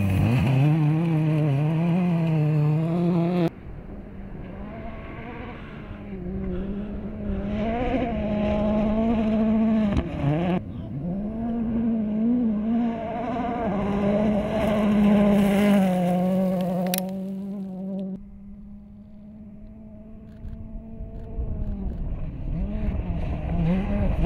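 Ford Fiesta RRC rally car's engine revving hard on a sand and gravel stage, its pitch rising and falling with throttle and gear changes. The sound cuts off abruptly several times between shots, and there is a quieter, steadier stretch near the end.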